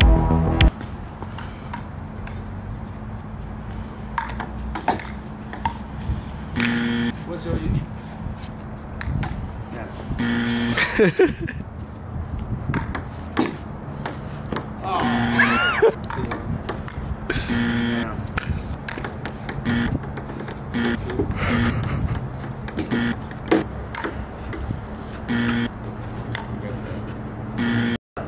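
People's voices and a laugh over a busy background with a steady low hum.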